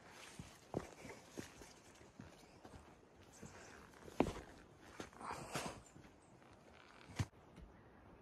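Hikers' footsteps crossing a log footbridge: scattered, uneven thuds and knocks of shoes on the wood.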